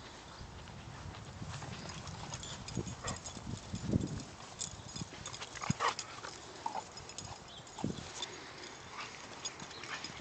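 A dog moving about on grass with a stick in its mouth: irregular soft thumps and clicks, the loudest about four seconds in.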